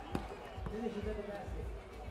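A basketball bouncing on an outdoor court surface, a couple of sharp bounces, with faint voices in the background.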